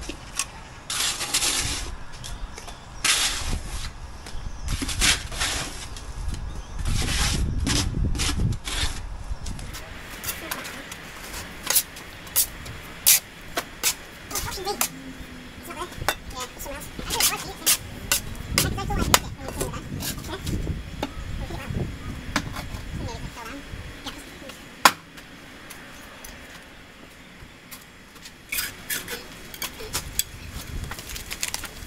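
Bricklaying work: a steel trowel scraping and working mortar on a spot board, with a run of short scrapes and sharp taps and clicks of the trowel against mortar and brick.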